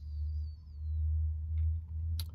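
A steady low hum, with a faint wavering high whistle in the first second.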